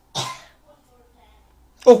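A man makes one short throat-clearing cough, then his voice resumes near the end.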